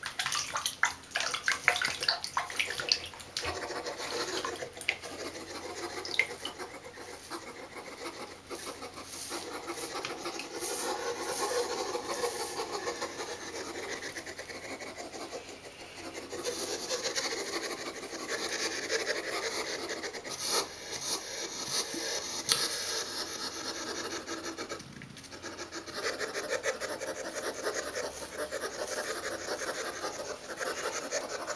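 Toothbrush bristles scrubbing a hedgehog's quills to work out matted food: a scratchy rasping made of quick, repeated strokes.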